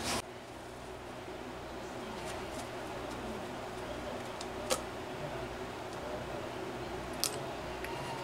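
Metal parts of a model glow engine being handled as a cylinder is worked off the crankcase: two sharp clicks, about halfway through and near the end, over a low steady background hum.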